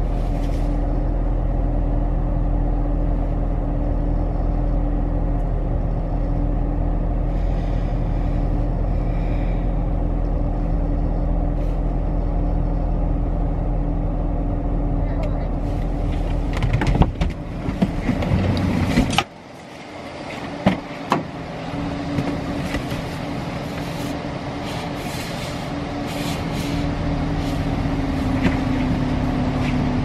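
A car engine idling steadily, heard from inside the cabin. About seventeen seconds in there is a burst of knocks and rustling, then the sound drops suddenly and a quieter hum with a few clicks follows.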